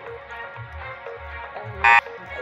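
Background music with a steady beat. Near the end, a single loud electronic buzzer beep from the quiz countdown timer marks the last seconds running out.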